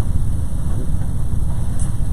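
Steady low rumble of room background noise, with no other distinct sound.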